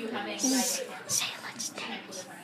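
A child speaking softly, partly in whispers.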